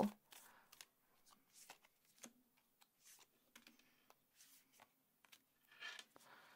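Faint hand shuffling of a tarot deck: soft, scattered clicks and riffles of card edges against each other.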